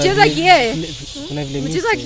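Speech only: a person talking into a microphone.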